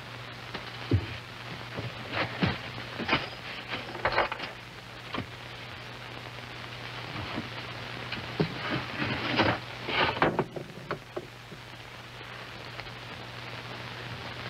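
Rummaging through a wooden chest: scattered knocks, clunks and rustles as things inside are shifted, busiest in two spells a few seconds apart, over a steady low hum and hiss.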